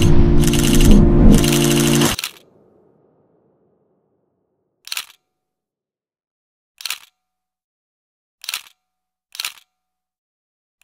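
Background music ends about two seconds in, with a brief fade. After a few seconds of silence come four short, sharp click-like sound effects, each under half a second, at uneven gaps of about one to two seconds.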